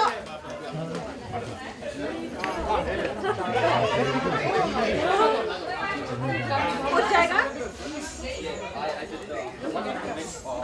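Several people chatting at once, overlapping voices with no single clear speaker.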